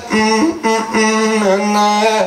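A man's voice singing a short wordless melody in a few long held notes, stepping a little in pitch: a melody idea sung out as it comes to mind.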